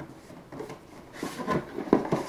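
Cardboard box being handled and opened: a brief scrape of cardboard sliding about a second in, then a sharp knock near the end.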